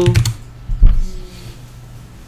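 Computer keyboard typing: a few keystrokes, with one heavy thump about a second in that is the loudest sound.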